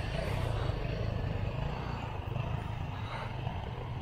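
Steady low rumble of a moving bicycle ride along a city street, with nearby motor traffic running.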